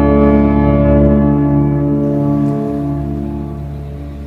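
Pipe organ in a church holding a sustained chord, some notes dropping out and the sound fading away over the last couple of seconds.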